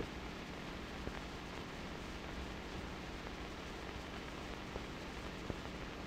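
Steady low hiss of an old 16mm film soundtrack, with a couple of faint ticks.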